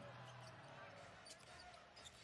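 Very faint basketball game sound: a ball bouncing on a hardwood court, with low arena noise.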